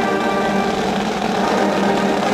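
Marching band playing long held chords, its wind instruments sounding steady sustained notes without drum hits.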